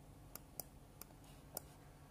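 Four faint computer mouse clicks, unevenly spaced, over quiet room tone.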